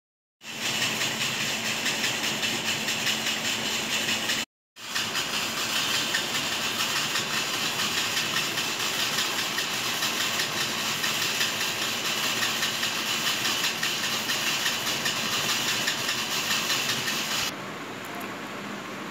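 Small DC motor spinning the rotating arm of an Arduino LED persistence-of-vision display: a steady whirring hiss with a faint low hum. It breaks off briefly about four seconds in and stops shortly before the end.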